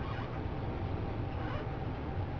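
Steady background hiss and room noise of the recording, with no distinct sound, in a pause between speech.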